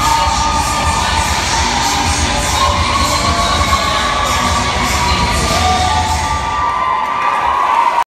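Large crowd cheering and shouting, with several high-pitched shouts held long over the top.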